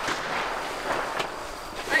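Indistinct background voices of people talking, over a steady outdoor background noise.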